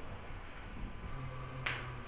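Quiet room tone with a low hum and hiss, and a single sharp click near the end.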